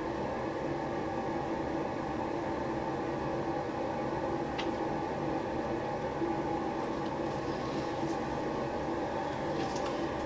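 Steady room hum and hiss with faint constant tones, like an appliance or fan running, and a single faint click about halfway through.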